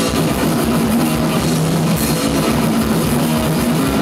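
A hardcore punk band playing live and loud: distorted electric guitars riffing over a drum kit.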